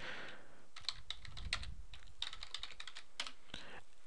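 Faint typing on a computer keyboard: a quick run of keystrokes over about three seconds as a short line of text is typed into a console prompt and entered.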